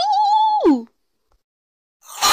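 A cat meowing once: one long call that rises in pitch, holds, then drops away, ending just under a second in.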